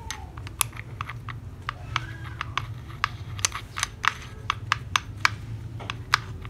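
Irregular light metallic clicks and ticks as the serrated flange of a TOTAL TG10710026 angle grinder is handled and fitted onto the gear head's spindle, over a steady low hum.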